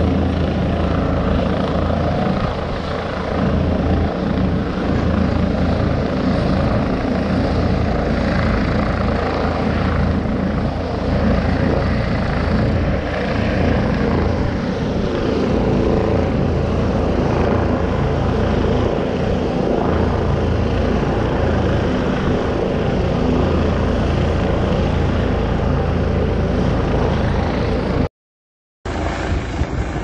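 Mountain rescue helicopter running steadily close by, a loud, continuous rotor noise; it cuts out for under a second near the end.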